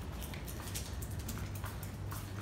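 Quiet indoor room tone: a steady low hum with a few faint ticks.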